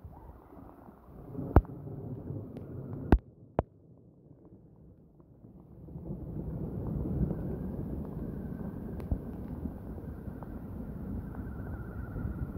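Wind and rain rushing on a phone microphone, with a few sharp knocks in the first few seconds. From about halfway it grows louder and steadier, with a faint high whine as a small electric RC crawler truck drives through floodwater.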